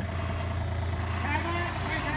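Compact excavator's diesel engine running at a steady, even pitch while it lifts a steel post on a strap.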